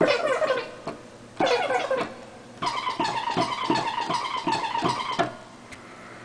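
Ensoniq EPS 16 Plus sampler playing back a just-recorded sample of a man's voice saying the synth's name, triggered from the keyboard at shifted pitches so the words come out garbled. There are two short phrases, then a longer, buzzing one of about two and a half seconds.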